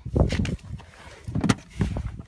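Someone climbing into a car's driver seat: rustling against the seat and door frame, with a few light knocks and bumps.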